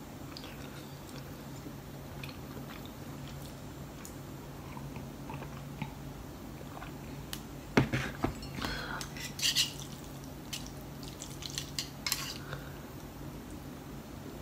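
Wooden chopsticks clinking and scraping against a ceramic bowl as noodles are stirred and picked up, busiest in the second half, with one sharp knock on the tray a little before eight seconds in.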